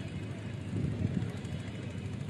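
Low, steady outdoor background noise at a cricket ground, with no distinct events.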